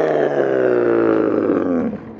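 Skateboard wheels rolling on a smooth concrete bowl: a continuous humming tone that sinks slowly in pitch as the board loses speed, then cuts off just before the end.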